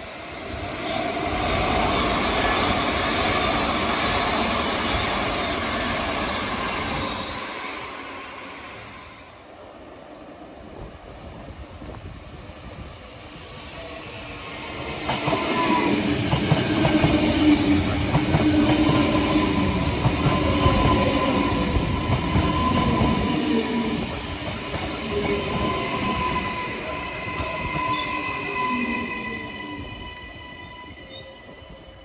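Queensland Rail electric passenger train running past: rumbling wheel-on-rail noise with a steady electric motor whine. It comes in two loud spells with a quieter gap near the middle.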